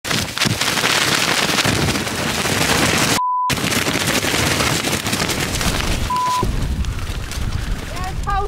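Strong gusts buffeting the microphone in a loud, continuous wind roar. It is broken twice by a short steady beep, about three seconds in with the sound cut out beneath it and again about six seconds in: censor bleeps.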